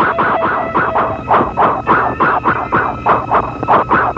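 A rapid run of shrill squealing stabs, about four a second, in a film soundtrack cue over faint sustained music.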